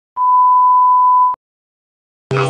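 A single steady electronic beep, one pure high tone held for about a second, starting and stopping abruptly.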